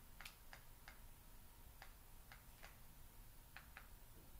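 Faint, irregularly spaced clicks, about eight of them, over near silence.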